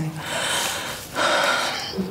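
A person breathing heavily: two long, noisy breaths, one straight after the other, like a sigh.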